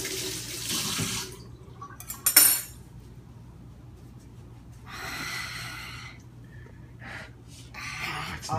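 Kitchen faucet running into a stainless steel sink as hands are rinsed under it; the water stops about a second in. A sharp clack follows about two and a half seconds in, the loudest sound, then hands are rubbed dry in a paper towel for about a second.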